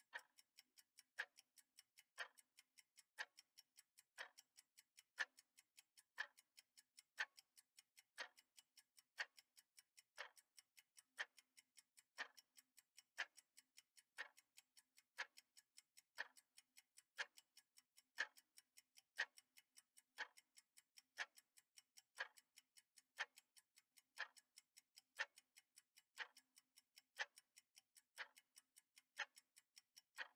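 Faint, steady clock ticking that keeps time with a countdown timer: a louder tick once a second with fainter ticks between.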